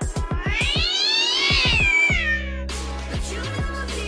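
Intro music with a cat's meow in it: a fast pulsing beat, then one long meow that rises and falls in pitch about a second in. At about two seconds it gives way abruptly to steady sustained low notes.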